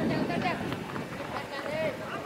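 Crowd of spectators at an outdoor football match, many voices talking and calling out over one another.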